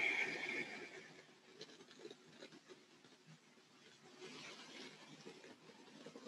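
Quiet room with a person's soft, slow breathing; one long, faint breath swells about four seconds in.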